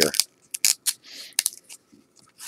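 1997 Topps baseball cards being flipped through by hand: several short sharp snaps of card edges and a brief rub of card sliding over card.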